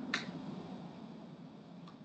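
A single short, sharp click just after the start, then faint steady hiss with a much fainter tick near the end.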